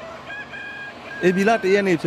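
A chicken calls once, a held, level note lasting under a second. Right after it a person starts talking.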